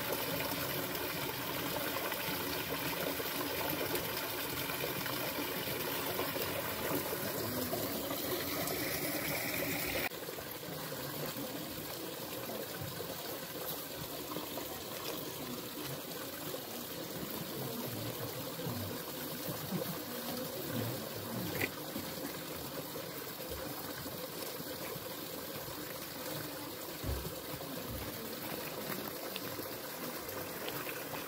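Small garden waterfall trickling over rocks into a pond, a steady splashing. About ten seconds in it drops abruptly to a softer, quieter trickle.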